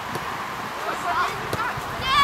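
Players' voices calling faintly across an open football pitch, with a single sharp knock about one and a half seconds in.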